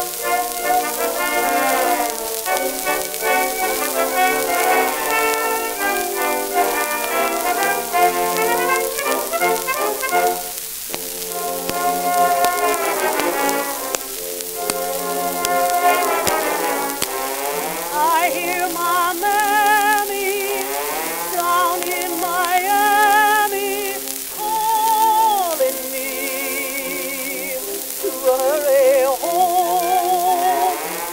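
Acoustically recorded 1919 Columbia 78 rpm disc playing a Tin Pan Alley song with orchestra accompaniment, thin and boxy with no bass and little treble. A steady hiss of record surface noise runs under the music.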